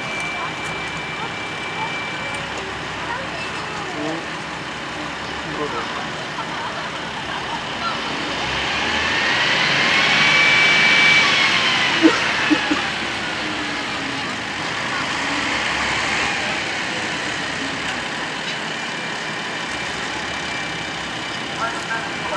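A rail vehicle's whine rises in pitch, peaks about halfway through and falls away, over steady outdoor noise. A few sharp knocks come just after the peak.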